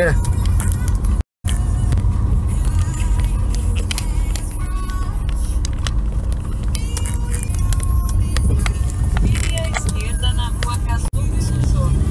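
Low, steady rumble of a car driving slowly over a potholed street, heard from inside the cabin, with scattered small knocks and clicks.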